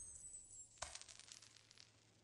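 Coins dropping onto a hard floor: one sharp clink about a second in, then a quick scatter of fainter clinks as they bounce and settle. Faint overall.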